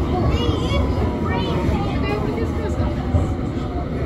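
London Underground District line train running, a steady rumble heard from inside the carriage, with passengers' voices chattering over it.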